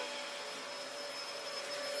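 Household vacuum cleaner running steadily: a continuous rush of air with a steady motor whine.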